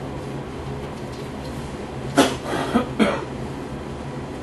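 Three short coughs in quick succession about two seconds in, over a steady low room hum.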